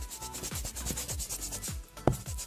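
Scratchy brush-stroke sound effect, a quick run of rubbing strokes, over background music with a steady low beat.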